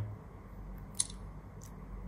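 A single short, sharp click about a second in, from a smartphone being handled as its rear fingerprint sensor unlocks it, over faint room tone.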